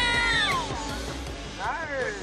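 A woman's high scream falling in pitch over background music, with a second scream starting near the end.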